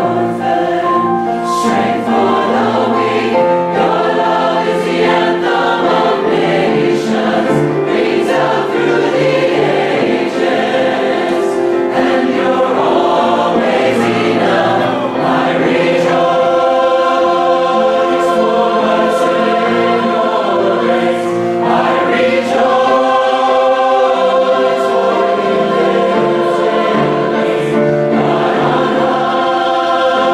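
A choir singing in full voice, many voices holding long notes together.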